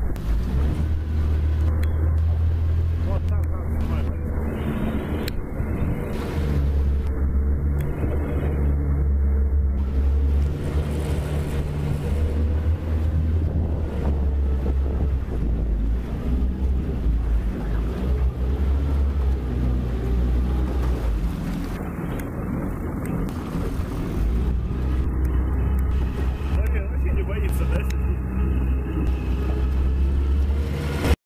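A boat motor running steadily, with wind rumbling on the microphone.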